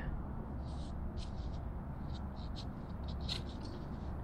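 Faint, scattered rustles and ticks of a hand moving over a large paper plan sheet on a wooden table, over a steady low room hum.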